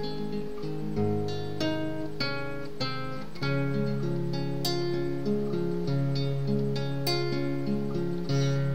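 Acoustic guitar playing alone: picked and strummed chords with a changing bass note, a fresh chord attack about every half second.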